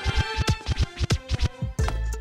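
Hip-hop music with rapid DJ turntable scratching, a quick run of sharp strokes several times a second. It cuts in abruptly over a calm, sustained ambient track.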